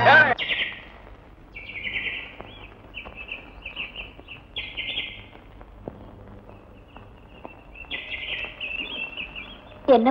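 Small birds chirping in short repeated bursts of high, quick calls, with brief pauses between them.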